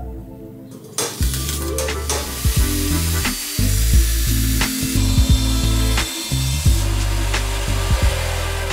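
Angle grinder with a thin cutting disc cutting through a steel motorcycle fender, starting about a second in, over background music.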